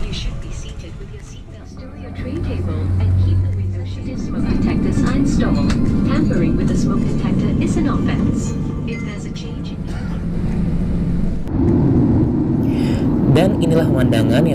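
Boeing 737-800 cabin ambience: a steady low hum of engines and air conditioning with people talking. The low noise grows louder about four seconds in.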